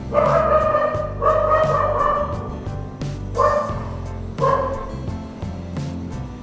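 Background music with a steady beat, with a louder held tone coming in four times, the first two long and the last two short.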